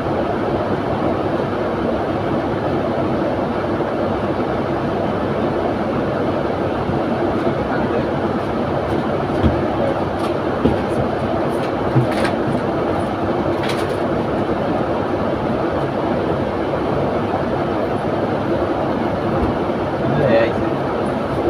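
Double-decker bus standing at a stop with its diesel engine idling, a steady rumble heard from the upper deck. A few short clicks and knocks come through in the middle.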